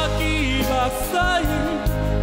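A man singing a Taiwanese Hokkien ballad into a microphone over band accompaniment with a steady bass.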